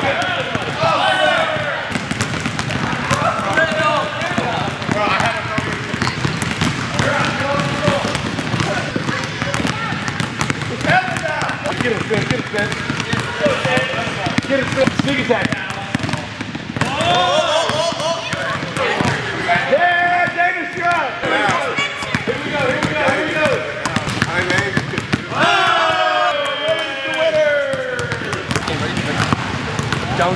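Several basketballs being dribbled on a hardwood gym floor, a constant patter of overlapping bounces, with voices calling out over them.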